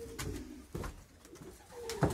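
Racing pigeons cooing in the loft: two low, falling coos, one at the start and one near the end, with a light knock in between.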